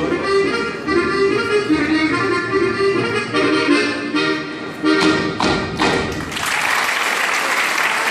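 Accordion playing a Sardinian ballu dance tune, which ends about six seconds in with a couple of sharp knocks. Audience applause follows.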